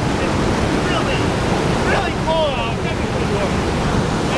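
Fast-flowing whitewater rushing steadily over rocks at a falls or rapids. A few short, high calls that glide in pitch sound over it.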